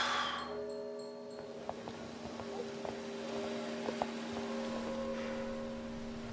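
A sudden whooshing swell at the start, then a low drone of held tones that shifts between notes, with a few faint clicks: trailer score and sound design.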